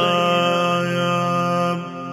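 A single voice holding one long sung note in a devotional lament chant for Zainab, over a steady low drone. The voice stops shortly before the end while the drone continues.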